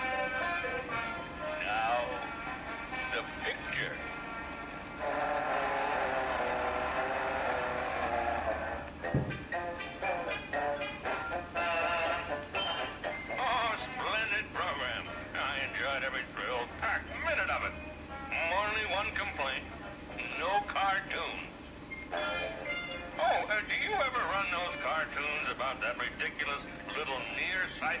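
Cartoon soundtrack played back from a laptop: a music score with character voices. A held musical passage comes about five seconds in, and after it voices come and go over the music.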